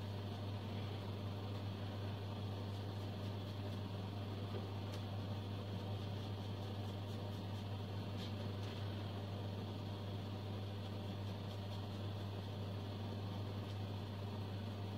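Bathroom exhaust fan running with a steady, even hum.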